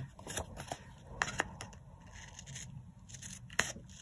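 Scissors snipping through a strip of patterned paper, trimming the excess flush with the edge of a card panel. A few separate, irregular snips with paper rustling between them; the sharpest snip comes near the end.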